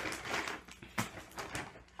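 Plastic bag rustling as things are taken out of it, with a few short knocks and crinkles from the items being handled.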